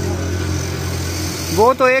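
Steady low hum of a nearby engine running, dropping away about a second and a half in, when a man's voice starts.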